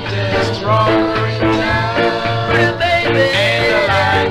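A 1966 Jamaican ska record playing: a stretch with no sung words, with a gliding melody line over a steady, repeating bass line.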